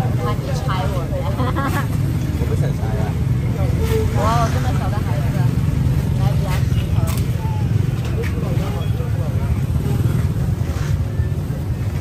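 A steady low engine hum runs throughout, with people talking over it, loudest about four seconds in.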